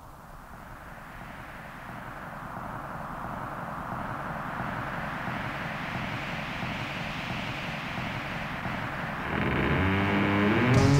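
A rushing, whooshing sound effect that swells steadily louder over about nine seconds, like an approaching jet or wind. Music starts near the end.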